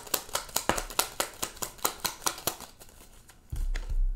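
A deck of tarot cards shuffled by hand: a quick run of crisp clicking snaps, about seven a second, that dies away after about two and a half seconds. A short low bump follows near the end.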